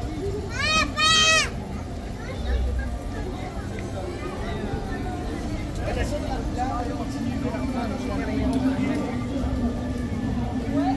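Crowd of people walking and chatting, with a loud, high-pitched squeal of two quick rising-and-falling cries about a second in.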